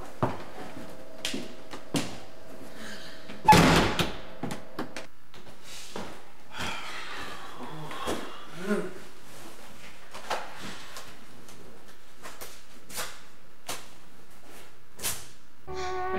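A door slams shut once, loudly, about three and a half seconds in, with a short ring after it. Faint scattered clicks and knocks come before and after it, and a low steady hum stops a second or so after the slam.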